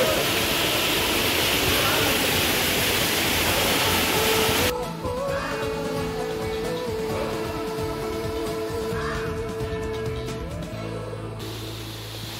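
A steady rushing noise that cuts off abruptly about five seconds in, followed by background music with long held notes.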